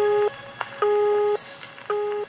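Electronic music track down to a lone pulsing synth beep, about half a second on and half a second off, in the cadence of a telephone busy signal.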